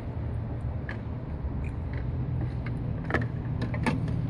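Steady low background hum, with a few short sharp clicks, two of them near the end.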